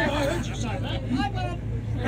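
A man laughing and people talking over the steady low drone of the ferry's engine.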